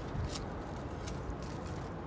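Faint handling of packaging: a soft bump and a few light rustles over a steady low background hum.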